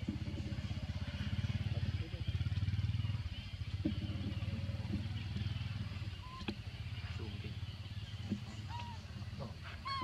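A small engine idles with a steady low drone. In the second half a baby macaque gives a few short, rising squeaks, most of them near the end.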